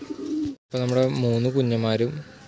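Domestic pigeon cooing: a long, low, drawn-out coo about a second long, after the sound cuts out briefly about half a second in.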